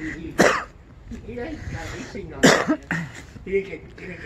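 A person coughs twice, once about half a second in and again about two seconds later, the second cough the louder.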